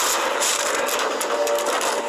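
Film soundtrack: a sustained musical drone with several short, sharp noisy hits over it about half a second to a second and a half in.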